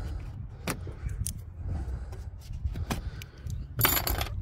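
Scattered small clicks and taps of the plastic scuttle panel trim and its clips being handled and worked loose on a VW Tiguan, with a louder clatter of clicks near the end.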